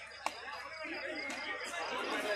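Crowd of spectators chattering, many voices overlapping at once, with a single sharp click about a quarter of a second in.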